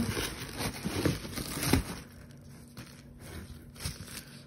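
Plastic bubble wrap and shredded paper packing filler crinkling and rustling as a hand digs through a cardboard box. The crinkling is busiest in the first two seconds and then dies down to a few small rustles.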